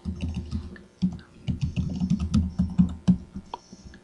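Typing on a computer keyboard: a quick, irregular run of key clicks with a short pause about a second in, as a username and password are entered at a login prompt.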